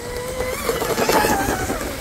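RC hydroplane, a Deltaforce Vortex 34 driven by a Leopard 4082 1600kv brushless motor, running flat out past close by. Its steady motor whine mixes with the hiss of its spray, swelling to a peak about a second in as it goes by.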